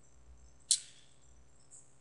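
Near silence broken by one short, sharp click about two-thirds of a second in, high-pitched and fading quickly, with a much fainter tick near the end.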